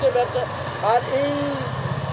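People talking in a market shop over a steady low mechanical rumble, like an engine running nearby; one voice holds a drawn-out sound a little after a second in.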